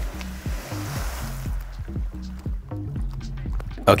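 Splash of a cliff jumper plunging into a lake, the spray hissing as it falls back and dying away over about a second and a half, under background music with a steady bass line.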